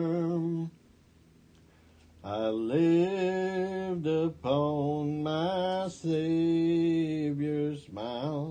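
A lone man singing a hymn unaccompanied, in slow, long-held notes, with a pause of about a second and a half near the start.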